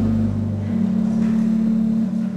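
Balbiani Vegezzi Bossi pipe organ holding sustained chords. Its deep pedal bass drops out about half a second in while the upper notes carry on.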